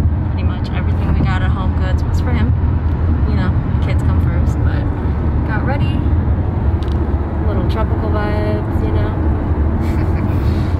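Steady low rumble of a moving car heard from inside its cabin, with muffled voices over it.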